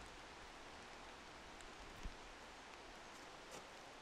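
Near silence: faint, even outdoor hiss, with one soft tap about two seconds in.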